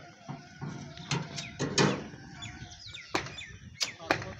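Sharp knocks and clanks of site work, several in quick succession about a second in and two more near the end, over a low steady engine running; a few short high squeaks between them.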